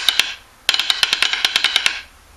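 Snare drum played with wooden drumsticks: a quick, even run of stick strokes that stops shortly after the start, then after a brief pause starts again and runs on. It is a short 3/4 measure played with ordinary stick-tip strokes, without backsticking.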